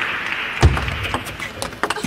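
Table tennis rally: the ball clicking sharply off the rackets and the table in a quick, uneven string of knocks, with one heavy low thump a little over half a second in.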